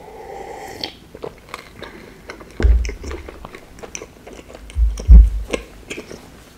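Close-miked mouth sounds of a person eating: gulps of drink from a glass mug in the first second, then chewing with many small wet clicks. A few dull low thumps stand out as the loudest sounds, one about halfway through and two close together near the end.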